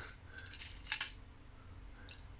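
Faint clicks of small parts being handled on a tabletop as an LED is picked up, the clearest click about a second in.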